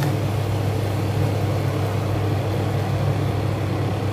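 A steady low machine hum, unchanged throughout, with a faint hiss over it.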